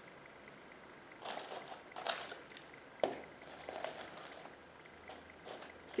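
Soft, irregular rustling and crackling as dry beechnut husks are pushed in among pine twigs by hand, with one sharp click about three seconds in.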